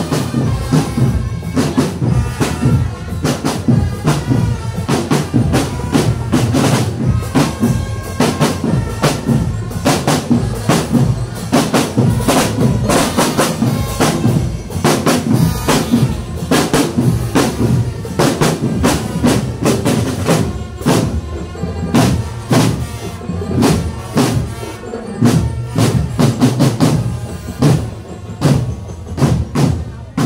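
A marching drum band playing on the move: many marching snare drums struck together with deeper bass drums in a fast, steady marching rhythm, with some pitched tones over the drums.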